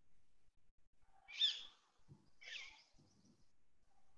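Two short, faint bird calls, each a falling whistle, one about a second in and another about two and a half seconds in.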